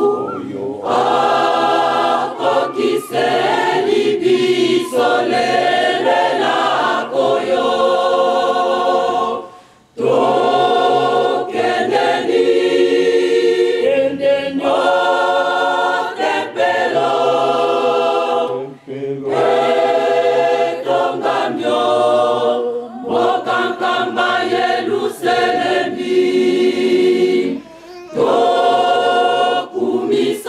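A large group of voices singing together as a choir, in long sung phrases with no instruments. The singing drops off briefly just before the ten-second mark, and again briefly later on, before resuming.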